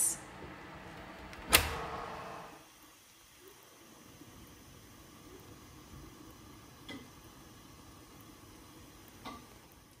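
A single sharp metal clunk with a short ringing tail about a second and a half in, from taking the baked loaf out of the oven; then quiet kitchen room tone with two faint clicks.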